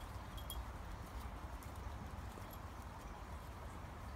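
Faint outdoor background: a low steady rumble with a few light, brief clicks and rustles scattered through it.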